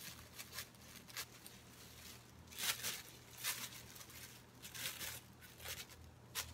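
Thin plastic grocery bag crinkling as dull scissors cut through its handle: faint, scattered crackles and snips, with the blades struggling to get through the plastic.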